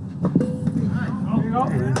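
A plastic wiffle ball hits the strike-zone target behind home plate with a sharp knock, about a quarter second in. Voices call out over the rest of it.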